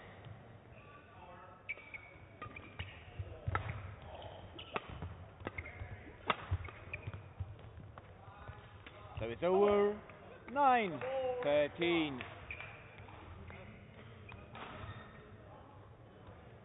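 A badminton rally: sharp racket strikes on the shuttlecock and thuds of footwork on the court. About two-thirds of the way through comes the loudest sound, a loud drawn-out shout that rises and falls in pitch as the point ends.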